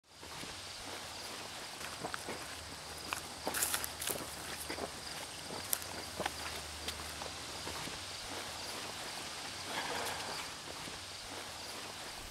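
Irregular footsteps and scuffs on a sandy dirt track, over a steady background hiss.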